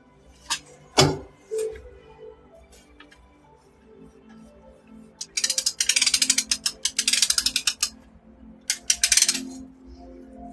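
A few single sharp clicks, then a rapid run of mechanical ratcheting clicks lasting about two and a half seconds and a shorter run just before the end, over faint background music.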